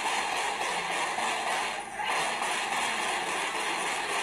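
Rapid gunfire heard through a phone's microphone as a dense, continuous crackling rattle, with a brief lull about two seconds in.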